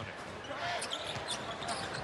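Basketball dribbled on a hardwood arena court, with the murmur of the arena crowd behind it.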